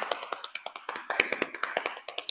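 Hands tapping quickly on the sides of the body, a rapid run of light taps, many a second.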